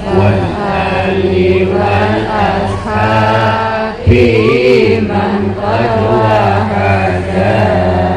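Amplified chanted singing of a Javanese Islamic devotional song over a PA loudspeaker, the voice holding long, wavering lines over a steady low backing.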